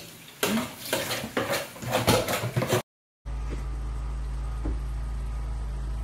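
Metal fork clattering and scraping on a ceramic plate of fried turkey pieces, a quick run of clinks. After a sudden break of silence about three seconds in, a steady low hum.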